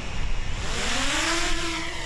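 DJI Mini 2 quadcopter drone taking off from the ground: its propellers spin up into a buzzing whine that rises in pitch, levels off about a second in and sags slightly near the end, over a broad hiss.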